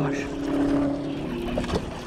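A steady motor hum holding one low pitch with overtones, fading out about one and a half seconds in.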